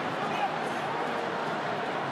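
Steady din of a large stadium crowd, heard through a television broadcast.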